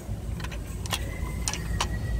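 Glass nail polish bottles clicking against each other and the plastic shelf rack as they are turned and straightened by hand: about four light separate clicks over a low steady store hum.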